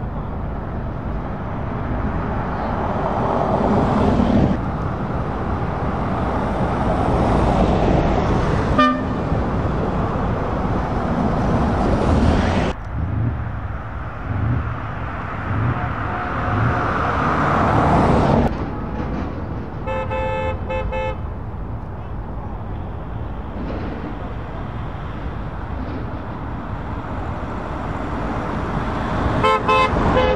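Vans driving past one after another, their tyre and engine noise swelling and fading with each pass. Horns toot over it: briefly about nine seconds in, a pulsed run of honks around twenty seconds, and again near the end.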